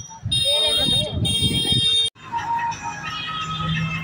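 Electronic beeping like an alarm, in two short bursts about a second apart, over low voices and street noise. It cuts off abruptly about two seconds in and gives way to a steady hum with faint music.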